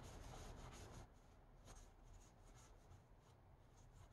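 Near silence with faint soft rustling and sliding of tarot cards being thumbed through by hand, a little louder in the first second.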